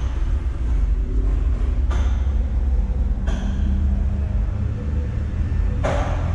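Steady low rumble with a faint hum, broken by a few light clicks.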